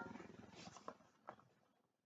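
Near silence: the last of a piece of music dies away in the first half second, followed by two faint brief ticks.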